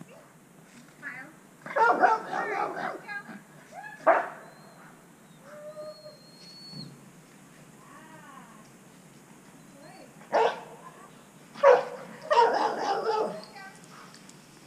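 A dog barking in bursts: a run of barks about two seconds in, single sharp barks near four and ten seconds, and another run near the end.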